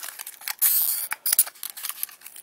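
Stiff clear plastic blister packaging crackling and clicking as it is squeezed and flexed by hand to free a diecast toy car wedged inside, with a longer crinkle about half a second in.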